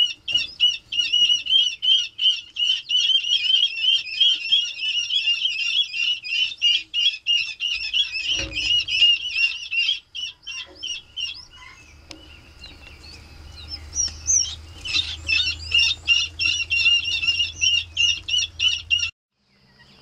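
A brood of ring-necked pheasant chicks and guinea fowl keets peeping: quick, high peeps, several a second, packed closely together. The peeping thins out briefly about halfway through, picks up again, then cuts off just before the end.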